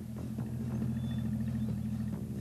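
Engine sound effect of a small cartoon bus driving in: a steady low hum with a regular chugging pulse about three to four times a second.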